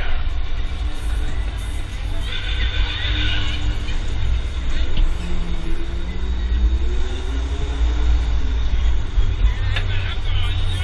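Heavy low wind rumble on a rider's camera aboard a spinning fairground thrill ride, with fairground music and riders' voices mixed in.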